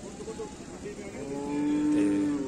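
A cow mooing: one long, steady moo that begins about a second in and grows louder.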